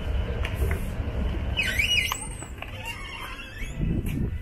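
Glass entrance door passing on its hinges or pivot: a short high squeal that rises and falls about halfway through, over a low rumble that fades out around the same time.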